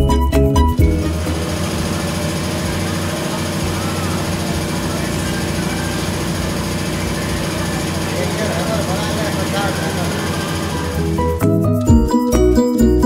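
Live sound of a cashew-shelling workroom: voices chattering over a fast, steady mechanical clatter. Background music cuts out about a second in and comes back near the end.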